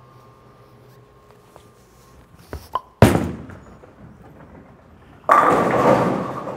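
A reactive-resin bowling ball is laid down on the lane with one sharp thud about halfway through. Roughly two seconds later it crashes into the pins, a loud clatter that holds briefly and then dies away.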